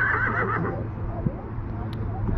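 A horse whinnying: a high, quavering call that ends within the first second.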